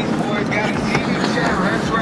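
Steady road and engine noise inside a moving car's cabin, with indistinct voices talking faintly over it.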